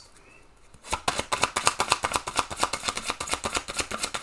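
A deck of tarot cards being shuffled by hand. It starts about a second in as a fast run of papery clicks, roughly ten a second.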